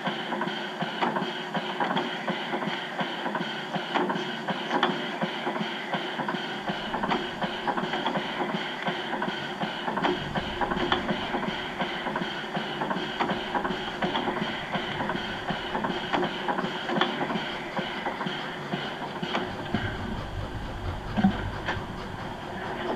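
Gauge 0 model railway running sounds: a steady, busy hiss and clatter with many fast small clicks. A low rumble joins about ten seconds in and is strongest near the end, as a model steam locomotive draws up on the next track.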